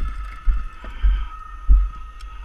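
Wind buffeting the helmet camera's microphone in irregular low rumbling thumps, about four in two seconds, over a faint steady high-pitched hum.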